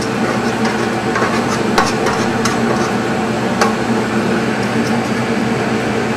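A metal baking sheet knocks and scrapes as baked sliced almonds are slid off it onto a steel counter, giving a few sharp clicks and taps in the middle. A steady ventilation hum runs underneath.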